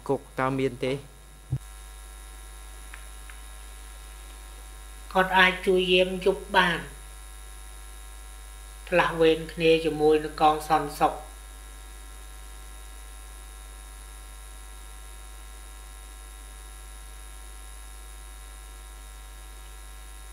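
A steady electrical mains hum on the audio line, starting about a second and a half in and holding at one level, with two short bursts of a voice speaking over it.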